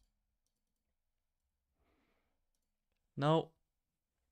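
Near silence, with a faint short noise about two seconds in and one short spoken word near the end.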